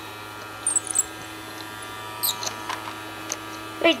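Small motor of a toy upright vacuum cleaner running with a steady hum as it is pushed over carpet. A few light clicks and rattles come as small balls are sucked up its clear tube, about half a second in and again past the two-second mark.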